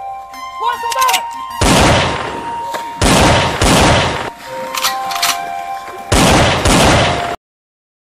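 Bursts of gunfire over background music with long held tones: four volleys of about half a second to a second each, the last one cut off abruptly near the end by a moment of silence.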